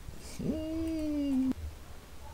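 A single drawn-out, voice-like pitched call of about a second. It starts about half a second in, rises at the onset, holds steady with a slight fall in pitch, and cuts off abruptly.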